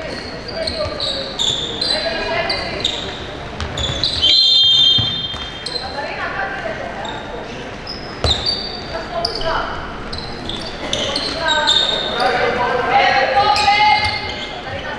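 Handball game in an echoing sports hall: the ball thuds on the wooden floor, shoes squeak, and players and coaches shout. A single whistle blast about four seconds in is the loudest sound.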